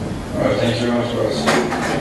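Indistinct speech with a single sharp knock about three quarters of the way through.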